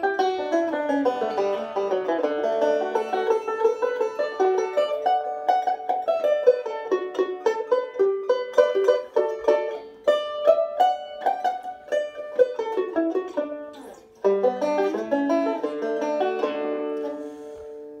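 Five-string resonator banjo picked fingerstyle, a fast run of single notes in a melodic style, the kind of passage in D or A the player says gives him fits and whose articulation never sounds good to him. The playing breaks off briefly about fourteen seconds in, then a second phrase follows and rings out near the end.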